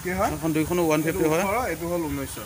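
A person talking over a steady background hiss.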